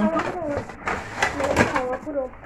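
A woman talking, with a few light clicks and rustles as a melamine dinner plate is taken out of its packaging.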